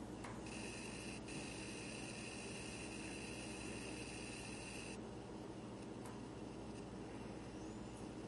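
Quiet room tone: a steady low hum under an even hiss. A higher-pitched hiss joins about half a second in and drops away about five seconds in.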